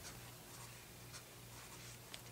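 Faint scratching of a pen writing on paper laid on a clipboard.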